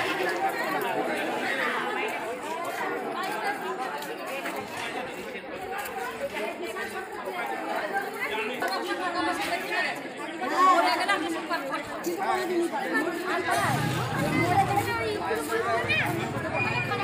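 Background chatter of many people talking at once, with overlapping voices that no single speaker stands out from.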